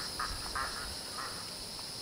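Faint outdoor ambience: a steady high-pitched hum or hiss, with a few faint short calls in the first second and a half.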